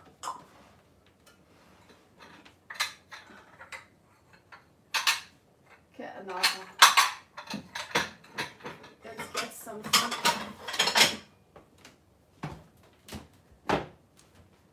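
Crockery and kitchen utensils being handled on a counter: scattered clinks and knocks, then a busy run of clattering in the middle, then two last knocks near the end.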